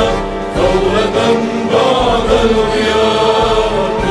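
An Arabic political anthem sung by voices in chorus over instrumental accompaniment.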